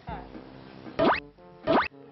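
Comic sound effects edited over background music: two quick, steeply rising sweeps, about a second in and near the end.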